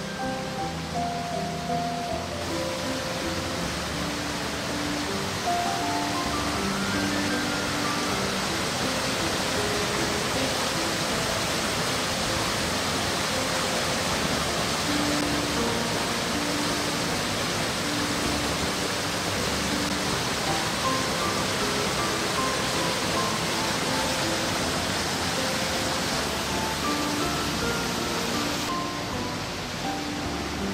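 Steady rush of water from a river waterfall, loud and even, setting in about two seconds in and easing near the end. Background music with a slow melody of held notes plays over it.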